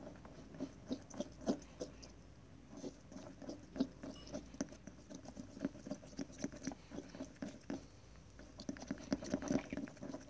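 A thin wooden stick stirring a thick shampoo-and-oil mixture in a small glass bowl: irregular quick taps and squishes, several a second, as the stick works the mixture and knocks the glass. The stirring eases off briefly about two seconds in and again near eight seconds.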